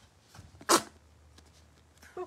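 A single short, loud squirt of paint with air, squeezed out of a paint bottle onto a palette about two-thirds of a second in, with a few faint handling clicks around it.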